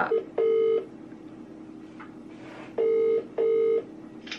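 Phone ringing tone played through the phone's speaker while an outgoing call waits to be answered: one short ring about half a second in, then a pair of short rings about three seconds in, in the British double-ring pattern.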